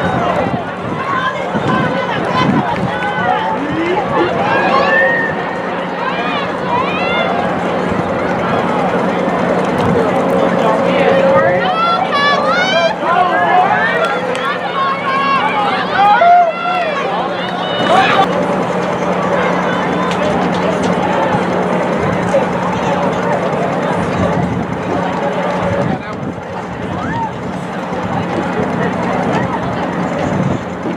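Many young voices chattering at once, an overlapping babble with no single clear speaker, with some higher-pitched voices rising above it now and then. A steady low hum runs underneath.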